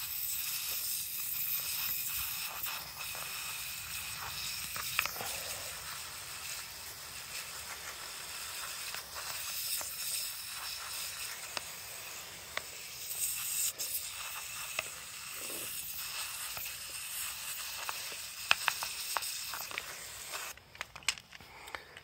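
Hand-pumped pressure sprayer jetting water onto plastic RC car wheel rims: a steady hiss with spatter from the spray hitting the rims and paving, blasting loosened dirt off. The spray stops shortly before the end.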